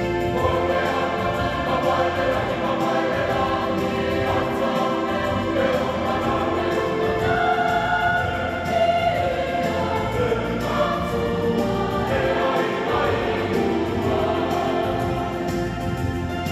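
Mixed choir of men's and women's voices singing a hymn together in several parts, steadily and without a break.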